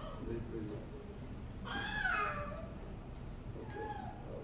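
A small child's brief high-pitched vocal sound, about a second long and falling slightly in pitch, about two seconds in, heard over a steady low room hum.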